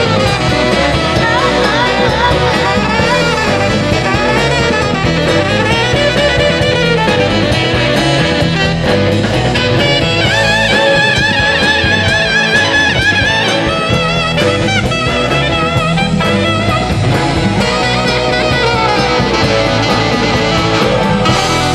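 Live band music with drums and bass under a saxophone solo: the sax plays wavering melodic phrases and holds one long note with vibrato a little past the middle.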